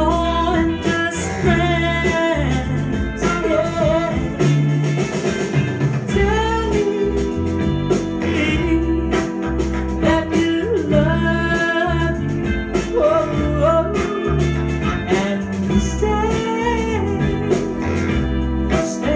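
A song with a singer over guitar, bass and drums, played from a 7-inch vinyl record on a turntable.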